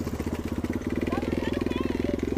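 Dirt bike engine idling steadily, with a rapid, even pulsing beat.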